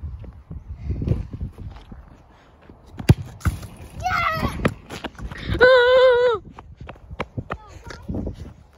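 A football kicked on a tarmac playground, a single sharp thud about three seconds in. Children's shouts follow, the loudest a long, steady, high yell about six seconds in.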